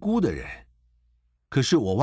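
Speech only: a man speaking Mandarin, with a pause of about a second in the middle.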